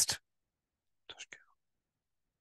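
A man's speech breaks off just after the start, then near silence, broken about a second in by a short, faint breathy sound from the speaker.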